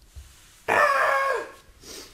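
A short, high-pitched vocal sound from a person, held a little under a second and dropping in pitch at the end.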